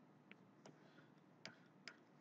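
Near silence with four faint, separate clicks spread over two seconds.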